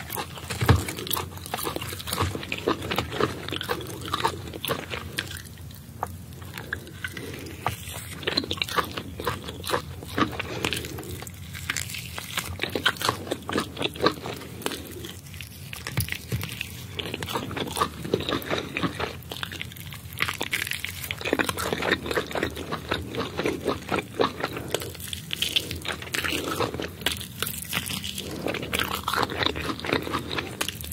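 Close-up biting and chewing of a steamed sand lizard: many small crackling clicks as the meat and skin are bitten, going in bouts with brief pauses every few seconds.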